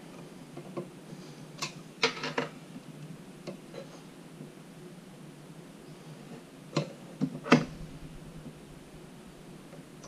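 Sharp metallic clicks and knocks from handling the vise clamp knobs and head of a DEFU 368A vertical key cutting machine, over a steady low background noise. There is a cluster of clicks about two seconds in and a louder one between about seven and eight seconds.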